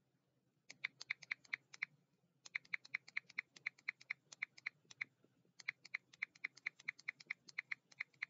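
Computer keyboard typing: three runs of quick key clicks, about five or six a second, broken by two short pauses.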